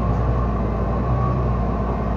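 Steady low drone of a bus's engine heard from inside the passenger cabin.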